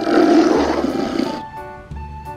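Dinosaur roar sound effect, a single roar about a second and a half long, played over light background music that carries on after it ends.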